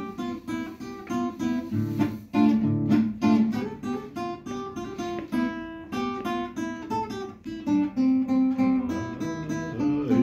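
Nylon-string classical guitar played solo: a plucked melody over bass notes and chords, several notes a second.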